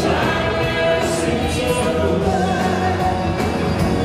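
Live band playing, with a male singer singing into a microphone over a drum kit and cymbals keeping a steady beat.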